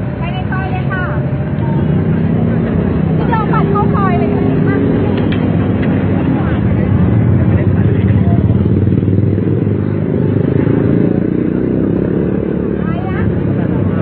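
Busy city street traffic, with motorbikes and cars running close by, and the voices of people in a crowd rising over it about three to five seconds in.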